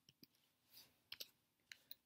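A few faint, irregular computer keyboard key clicks as the last keys of a line of code are typed and Enter is pressed.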